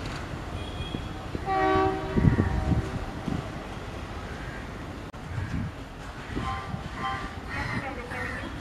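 Diesel shunter's horn sounding one short blast about a second and a half in, followed by a louder low rumble, over the noise of a crowded station platform.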